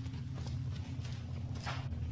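Footsteps on a concrete floor, a few short knocks, over a steady low hum.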